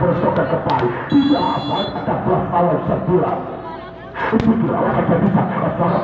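Crowd and voices at a volleyball match, with a referee's whistle blown once about a second in, lasting under a second. A single sharp smack follows about four seconds in, as the ball is put in play.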